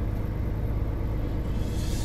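Semi-truck driving on a town street, heard from inside the cab: a steady low engine and road rumble, with a brief hiss near the end.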